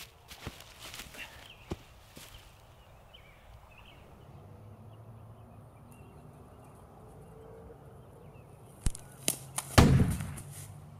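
A body falling onto dry leaves, with rustles and light thuds in the first couple of seconds, then a quiet outdoor background. Near the end come four sharp, loud cracks, the last one the loudest, with a deep boom.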